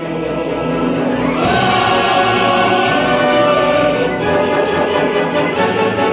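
Opera orchestra with a male chorus singing, building in a crescendo to a loud full-orchestra entry about a second and a half in that holds to the end.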